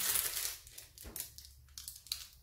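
Clear plastic protective film on a diamond painting canvas crinkling as it is lifted from the adhesive layer. The rustle fades about half a second in, leaving faint crackles as the film comes away. The glue holds well.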